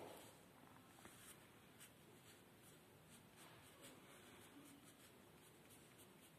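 Faint scratching of a drawing tool on paper: quick, irregular strokes as lines are drawn.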